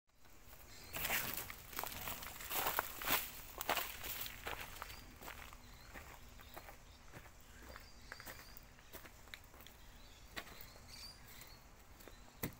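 Footsteps on dry bark, leaf litter and twigs, close and heavy for the first few seconds, then sparser and fainter.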